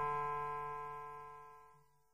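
Final piano chord ringing out and dying away, fading to nothing about a second and a half in.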